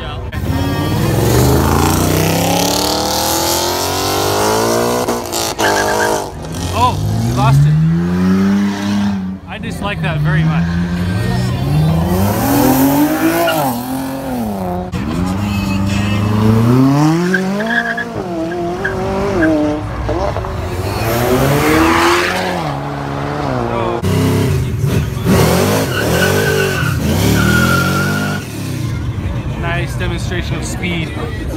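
Sports-car engines revving hard one after another as the cars pull away, the pitch climbing and dropping again and again. Among them is a McLaren's twin-turbo V8, revved about halfway through.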